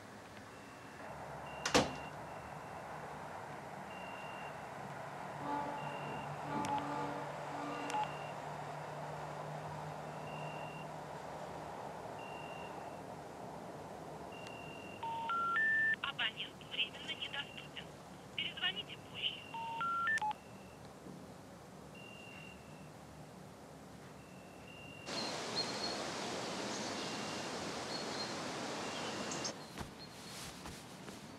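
Mobile phone call through the handset hitting the three rising notes of the telephone network's special information tone, twice, with short beeps in between: the signal that the number cannot be reached. A hissing line follows near the end.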